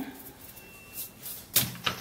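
Two short, sharp knocks about a second and a half in, a quarter of a second apart, against an otherwise quiet background.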